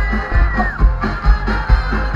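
Live ska band playing loudly, with horns, guitars and a drum kit keeping a steady beat. A long held high note falls away just under a second in.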